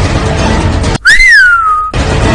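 Film soundtrack bed, then about a second in it cuts to a single whistled note that rises sharply, slides down and holds steady for nearly a second.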